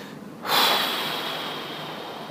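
A person's long breath out, heard close to the microphone as a hiss that starts suddenly about half a second in and slowly fades.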